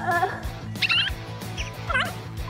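Background music with steady low tones and a regular soft beat, with a brief burst of high, quick gliding chirps a little under a second in.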